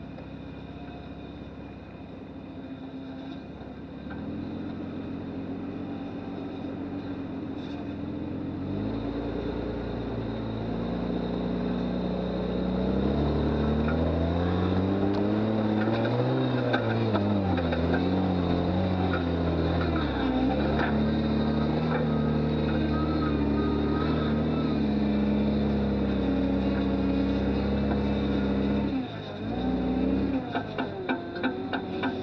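1997 Lexus LX450's inline-six engine pulling at crawling speed up a steep dirt bank. It grows louder from about four seconds in, its pitch rising and falling as it is worked over the crest, then runs steady and loud before breaking off near the end.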